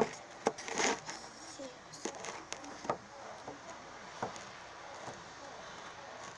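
Phone being handled and set on a wooden surface: a string of knocks and rustles close to the microphone, loudest at the very start and just under a second in, then a few lighter knocks before it settles.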